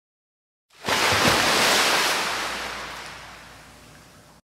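An intro sound effect: silence, then about a second in a sudden rush of noise that swells up and slowly fades away over the next three seconds.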